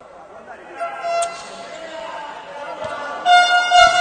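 An air horn starts a long, steady blast about three and a half seconds in, loud and held past the end. Earlier there is a single sharp knock a little after a second in.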